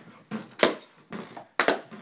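A rhythmic beat of sharp percussive hits, about two a second, keeping time for a dance.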